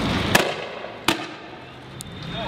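Two sharp gunshots from soldiers' rifles, about three-quarters of a second apart, the first over a rushing background noise that dies away after it.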